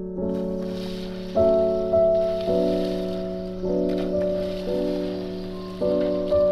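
Background music: held chords that change every second or so, each one entering louder and then fading, over a faint steady hiss.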